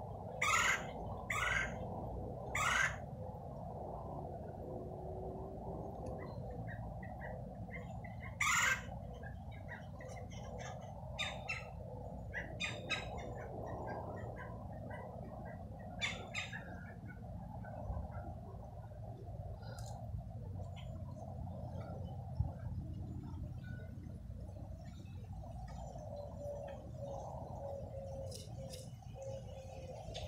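Woodpeckers calling loudly as they fight: four long calls in the first nine seconds, then scattered shorter calls and chirps, over a steady low background rumble.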